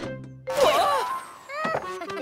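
Cartoon background music with a thunk at the very start, a sudden louder noisy burst with sliding pitches about half a second in, and another sharp knock near the end.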